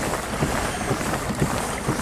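Steady wind noise on the microphone, with water washing along the hull of a fishing kayak moving through calm water.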